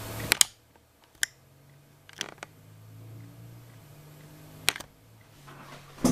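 A handful of short, sharp clicks and taps spread over several seconds, a loud pair at the start and another pair near the end, over a faint low hum.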